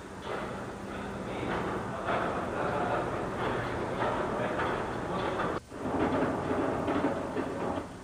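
Echoing ambience of a large indoor swimming-pool hall from an old camcorder recording, with indistinct voices and a low steady hum. The sound drops out briefly a little past the middle.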